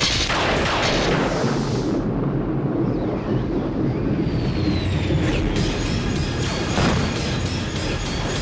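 Cartoon sound effects: a thunderclap right at the start, a low rumble with a faint falling whistle, and a second crash about seven seconds in, over dramatic background music.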